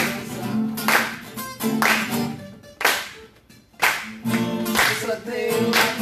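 Live acoustic guitars strummed with singing, marked by sharp accents about once a second that sound like hand claps. The music drops away briefly a little past halfway, then picks up again.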